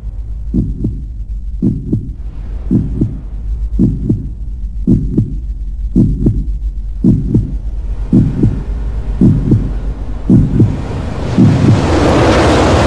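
Trailer-style heartbeat sound effect: slow paired thumps, lub-dub, about once a second over a low steady drone. A rushing swell builds up through the last few seconds.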